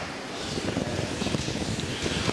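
Steady background noise of a large meeting hall, with faint, indistinct murmur from the audience.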